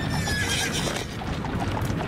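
A single falling animal call, about half a second long, over a run of regular clopping knocks and a steady low rumble.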